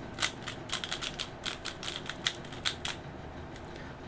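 MoFang JiaoShi MF3RS3 3x3 speedcube being turned quickly by hand to scramble it: a rapid run of plastic clicks and clacks from the layer turns, stopping about three seconds in.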